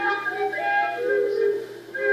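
A folk melody of held, gliding notes on a small wooden pipe, played back from a monitor's speakers and picked up in the room.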